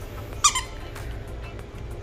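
Squeaker inside a plush turtle dog toy squeezed once, giving a single short, high squeak about half a second in, over background music.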